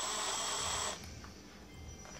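Cordless drill running for about a second with a steady high whine, then stopping.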